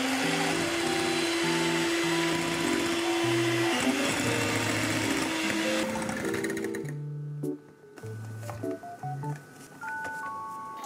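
Electric hand mixer running with its beaters whipping egg whites and sugar into meringue in a glass bowl, steady for about six seconds, then it stops. Background music plays throughout.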